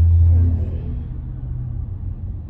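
Low rumble of a car heard from inside the cabin, loudest in the first second and then easing off.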